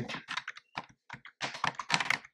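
Computer keyboard typing: a quick run of about a dozen keystrokes.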